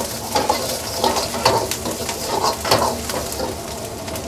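Garlic, chopped ginger and green chillies sizzling in hot oil in a steel wok, stirred with a metal ladle that scrapes and clinks against the pan now and then.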